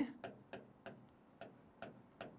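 Stylus tapping and clicking faintly on an interactive display panel while handwriting, about five short, irregular ticks.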